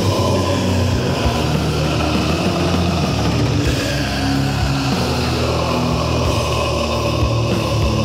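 Old-school death metal recording: heavily distorted guitars and bass playing a dense, low riff over drums, at a steady loud level.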